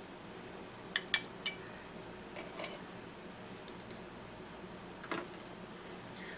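Smokeless shotgun powder poured from a metal scoop through a plastic funnel, with a brief hiss of pouring. A few sharp clicks of the scoop against the funnel follow about a second in, then lighter scattered taps and clicks.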